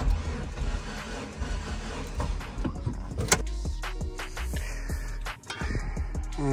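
Dodge Neon SRT-4's starter cranking its 2.4-litre turbocharged four-cylinder engine with the spark plugs out and the fuel and ignition disabled, so it spins over without firing while a gauge reads cylinder four's compression. Background music plays underneath.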